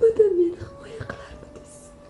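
A woman sobbing: a loud wailing sob that falls in pitch in the first half second, then a few weaker catches of voice and breath, over soft background music.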